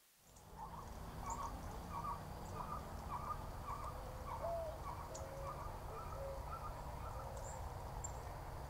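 A bird calls a short note over and over, about twice a second, with fainter high chirps and a steady low outdoor rumble behind it.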